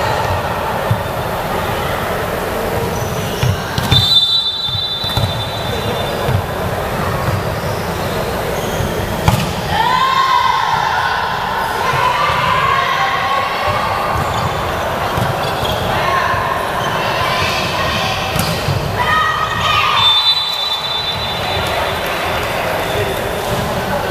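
Volleyball rally in a large hall: a referee's whistle blows briefly about four seconds in and again near the end, with the ball being struck and bouncing off the wooden floor. Players shout and call across the court, loudest just after a sharp ball strike in the middle, and everything rings with the hall's echo.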